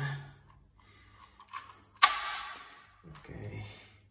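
A sharp plastic click from a handlebar phone holder being turned and set on its mount, with a short rustle trailing after it about halfway through. A fainter click comes just before it.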